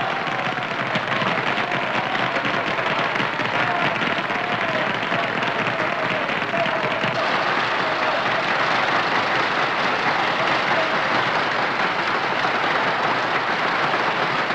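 Large concert-hall audience applauding steadily and at length, a dense, unbroken clatter of many hands that swells slightly toward the end. It is heard through the narrow sound of an old film soundtrack.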